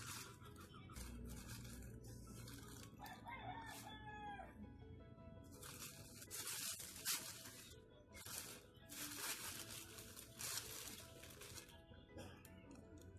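Plastic courier mailer crinkling and rustling in repeated bursts as it is handled on a table. About three seconds in, a rooster crows once in the background, a drawn-out call that falls in pitch at the end.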